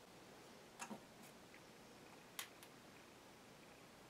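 Near silence: room tone with a few faint, short clicks as a small servo and the brush of a can of liquid electrical tape are handled. A quick double click comes about a second in and two more come a little past halfway.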